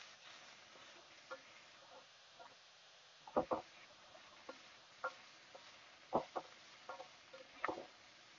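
Wooden spatula stirring pork pieces with garlic and onion in a stainless steel pan, giving scattered knocks and scrapes against the metal over a faint steady hiss. The loudest is a quick double knock about three and a half seconds in.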